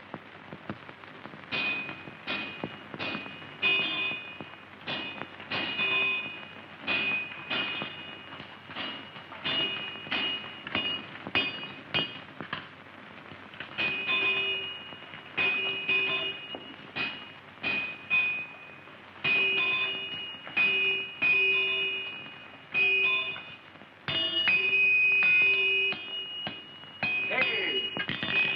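A blacksmith's hammer striking metal on an anvil over and over, about one to two blows a second. Each blow gives a bright, ringing clang on the same pitch, with a short pause partway through.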